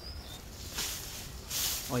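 Rustling and swishing of cut grass and weeds being stepped through and dragged, in two short bursts about a second apart.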